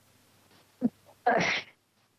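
A person's short, noisy burst of breath about a second in, like a sneeze, preceded by a brief small sound.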